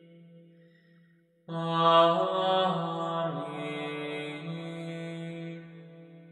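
Gregorian chant sung in unison by low voices: a held note dies away into reverberation, and after a brief pause a new long phrase starts about one and a half seconds in. It steps in pitch a couple of times and fades near the end.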